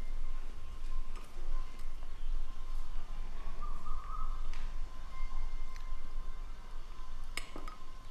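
Metal cutlery clinking against china plates in a few short, sharp strikes, the loudest pair near the end, over a faint steady background tone.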